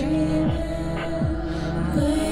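Electronic dance score: a sustained low drone with a deep bass pulse that drops sharply in pitch, about every three-quarters of a second, three times.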